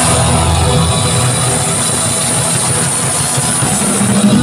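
Live band music played loud through stage speakers, a dense, steady wash of sound with rock drums.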